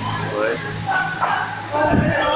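Short vocal calls from a group of young men, a few fractions of a second each and sliding in pitch, over background music.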